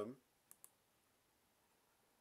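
Two quick, short clicks of a computer mouse button about half a second in, selecting a link on screen; otherwise near silence.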